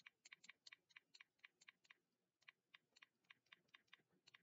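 Faint, irregular clicking of keys being typed on a computer keyboard, several strokes a second, with a short pause about two seconds in.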